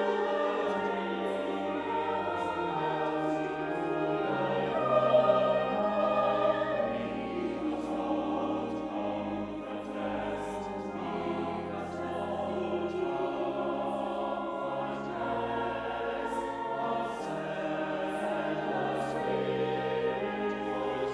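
Mixed church choir of men's and women's voices singing in parts, with organ accompaniment holding long low notes beneath the voices.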